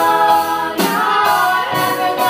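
Young voices singing a country song together in held notes, with a live band of acoustic guitar, drum kit and upright bass, sharp accents falling about a second in and again near the end.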